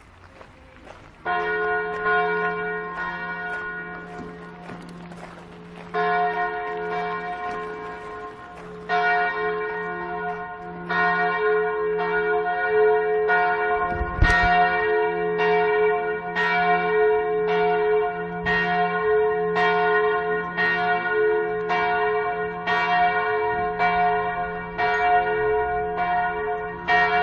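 Church bells ringing, the first strike about a second in. The strikes come several seconds apart at first, then about once a second from the middle on, each leaving a long ring over a deep, steady hum.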